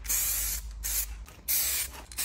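Aerosol can of weld-through primer spraying in bursts onto a cut sheet-metal repair patch: a strong hiss over the first half second, a weaker one just after, and another strong burst near the end.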